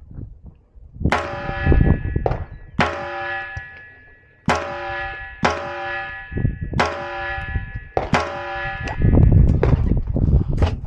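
Seven sharp strikes, each followed by a bell-like metallic ring of the same pitch that fades over about a second.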